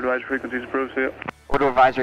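Speech over the cockpit headsets, with background music underneath.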